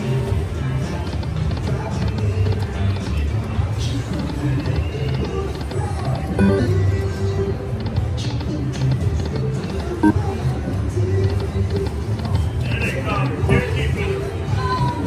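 Buffalo video slot machine playing its reel-spin music and sound effects over several spins in a row.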